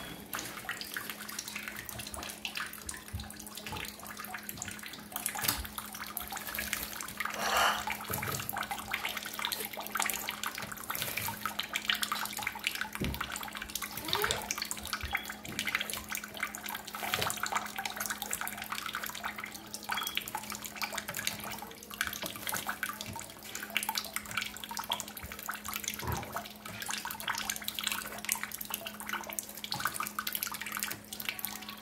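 Thin stream of tap water running into a stainless steel kitchen sink while a pet conure bathes under it, with irregular splashes and flutters as it moves in the water. A steady low hum runs underneath.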